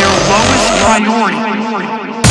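A breakdown in an electronic drum and bass track: the kick and sub-bass drop out, leaving warbling, pitch-bending sounds. About a second in, the high end is filtered away as well, so the sound turns thinner and duller.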